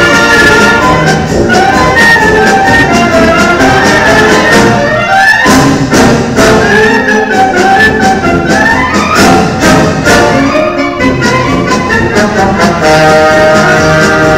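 Municipal wind band playing a Mexican medley: clarinets, saxophones and brass with a sousaphone and percussion. Two quick rising runs sweep up through the band, about five and about nine seconds in.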